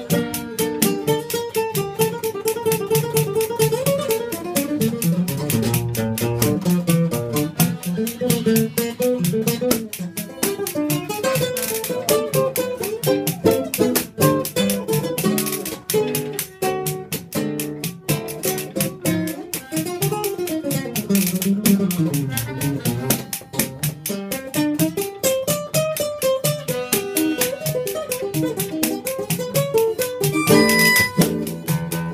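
Small acoustic jazz group playing live: harmonica melody lines over acoustic guitar accompaniment, the melody rising and falling in pitch without a break.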